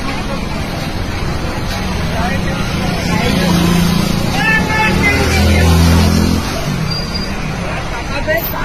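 Busy street sound: a hubbub of many people talking over road traffic, with a low drone that swells and is loudest about five to six seconds in.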